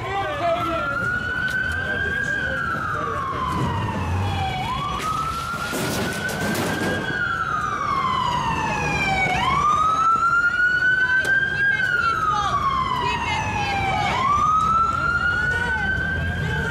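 Police siren in wail mode: a slow tone that rises for about two seconds and falls for two more, repeating about every four and a half seconds, with a brief rush of noise about halfway through.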